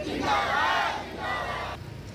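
A crowd of protesters shouting a slogan together, many voices at once in two short phrases, stopping abruptly about three-quarters of the way through.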